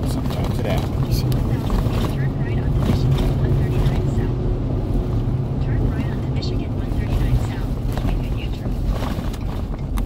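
Steady low road and engine rumble inside the cabin of a moving vehicle.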